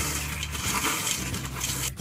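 Wooden spoon stirring chocolate-coated Rice Chex cereal in a stainless steel mixing bowl: a continuous crunchy, scraping rustle of cereal against the metal, cut off abruptly just before the end.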